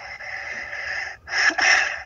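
Breathy exhaling with no voice in it: one long breath, then a shorter, louder one about a second and a half in.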